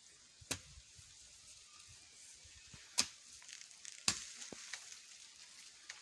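A hand hoe striking and scraping dry, crumbly soil while digging around a yam tuber: three sharp strikes, about half a second in, about three seconds in and about four seconds in, with soil crackling and trickling between them.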